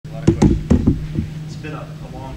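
Five quick, heavy knocks close to the microphone in the first second or so, then a man's voice begins near the end. A steady low hum runs underneath.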